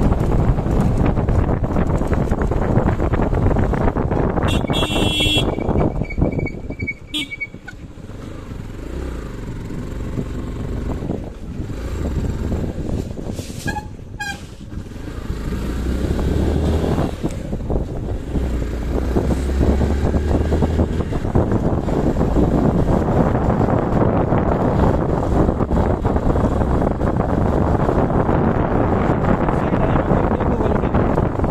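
Motorcycle riding over a rough dirt road, its engine mixed with wind noise on the microphone. A vehicle horn toots about five seconds in and again briefly around fourteen seconds.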